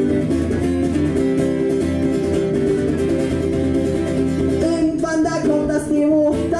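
Acoustic guitar strummed steadily in a live solo punk-songwriter song; a man's singing voice comes back in near the end.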